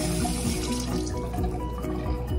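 Bathroom sink tap running into the basin, shut off under a second in, over background music.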